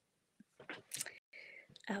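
A quiet pause with a few short, faint soft sounds, then a woman's voice starts speaking just before the end.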